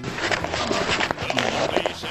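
Indistinct voices over a dense clatter of short knocks and rustles.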